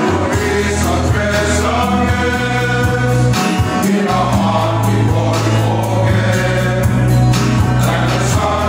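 A men's choir singing a hymn together, accompanied by strummed acoustic guitars.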